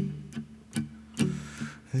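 Acoustic guitar played alone between sung lines: about five picked or strummed strokes, roughly two or three a second, each ringing and fading before the next.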